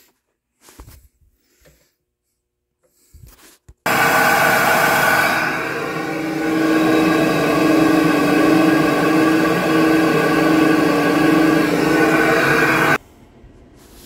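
SuperFlow flow bench switched on about four seconds in: its motors run with a steady whine while pulling air through the Holley 850 carburettor, intake and cylinder head at about 27.5 inches of water test pressure. It shuts off suddenly about a second before the end. A few light handling knocks come before it starts.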